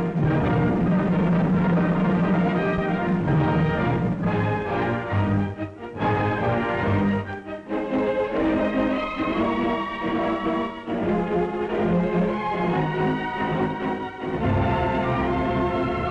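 Orchestra playing a theatre overture, with a few brief dips in the music and fuller low notes returning near the end.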